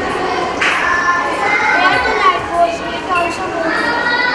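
Children's voices talking over one another: a steady babble of overlapping young voices.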